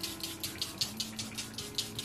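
Charlotte Tilbury setting spray pump-misted onto the face in quick repeated sprays, a short hiss about five times a second.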